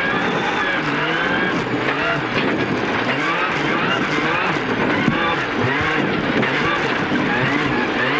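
Rally car engine revving hard on a gravel stage, heard onboard. Its pitch repeatedly climbs and drops back as the driver accelerates, changes gear and lifts for corners.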